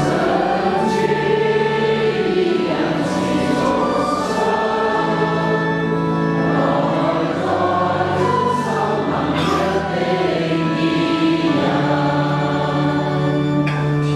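A group of voices singing the Cantonese responsorial psalm response as a slow hymn, over sustained low accompanying notes from an organ.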